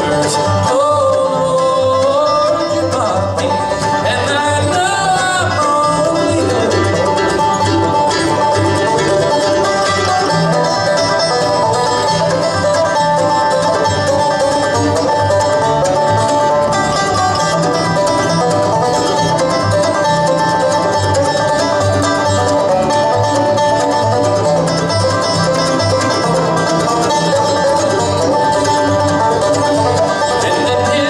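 A live bluegrass band playing, with a resonator banjo picking the lead over upright bass and acoustic guitar. In the first few seconds a gliding melodic line sounds over the picking.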